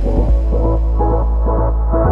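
Electronic background music with a deep, steady bass and a rhythmic pattern of short notes over it.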